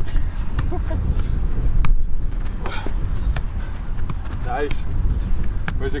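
Wind noise on the microphone with several sharp thuds of a football being kicked and volleyed between players, and brief snatches of men's voices.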